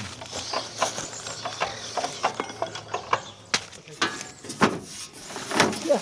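Irregular metal clicks and clanks of a drive belt being worked by hand onto the pulley of a two-wheel walking tractor's engine, the engine not running.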